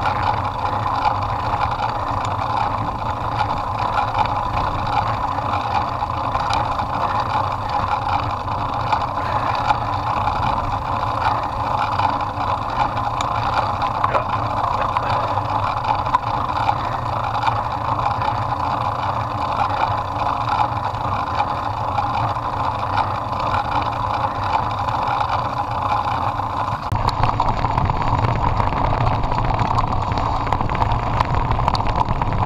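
Mountain bike rolling over a stony dirt track: a steady rumble and crunch from the tyres, with many small rattling clicks from the bike. The low rumble grows louder near the end.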